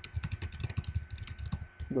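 Typing on a computer keyboard: a quick, irregular run of key clicks as a line of code is entered.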